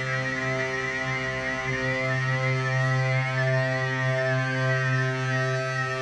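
Isolated electric guitar and bass tracks with no vocal. Held, droning notes sit over a steady low bass note, with a high guitar line that wavers up and down.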